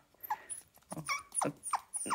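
A small puppy whimpering in a few short, high squeaks that fall in pitch, eager for the food being held above it.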